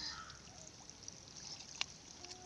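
Water trickling faintly in a muddy pool, with one sharp click near the end.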